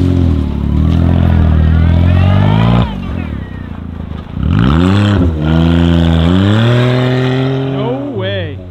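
Lifted Smart Fortwo's small three-cylinder engine revving as the car pulls away and drives across snow. Its pitch climbs, drops sharply about three seconds in as the automated gearbox shifts up, then rises and falls again.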